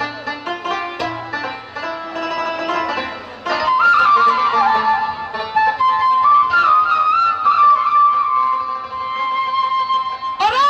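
Instrumental passage of a live Bengali Baul folk ensemble between sung lines, with no voice. Several instruments play together, and about a third of the way in a louder melody line enters, holding and stepping through long notes.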